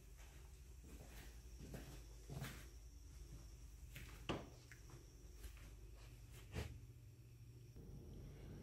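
Near-silent room tone with a few faint, soft footsteps.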